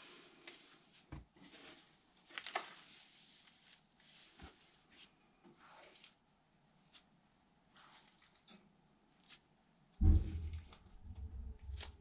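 Shredded paper rustling faintly as it is spread by hand in a worm bin, with scattered light crackles. About ten seconds in, a louder wet handling sound as handfuls of goo (worm food) are put into the bin.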